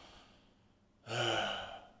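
A man sighing once, a voiced breath out lasting under a second, starting about a second in.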